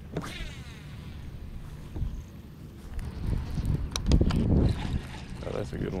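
Wind rumbling on the camera microphone, with a louder gust about four seconds in and scattered light clicks of handling.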